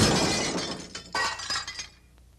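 A shattering, breaking-glass sound effect laid over a cracking-wall video transition. A crash that began just before fades away, and a second burst of shattering comes about a second in and cuts off near the end.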